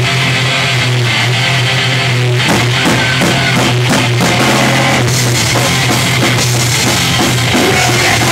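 Hardcore punk band playing live and loud, starting a song: a held, distorted guitar and bass chord rings out, then the drums come in about two and a half seconds in and the full band plays on at a fast pace.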